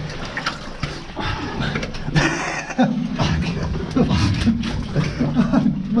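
A person shuffling backwards through shallow muddy water in a tight mine passage: irregular splashing, scraping and squelching. Strained, breathy voice sounds join in about halfway through, and laughter comes right at the end.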